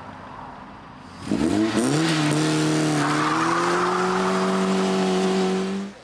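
Car engine revving hard as the car pulls away. About a second in the pitch climbs quickly, then keeps rising slowly under steady hard acceleration, joined by tyre noise from about three seconds in, before cutting off suddenly near the end.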